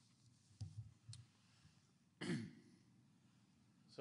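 Near-quiet room tone with a faint click about a second in, then a man's short throat-clearing sound, falling in pitch, a little after two seconds.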